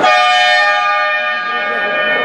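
Sports-hall scoreboard horn sounding: one steady, held tone that starts suddenly and lasts the full two seconds.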